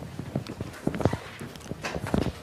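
Irregular light taps and knocks, about four or five a second, the sound of writing on a surface, over faint room noise.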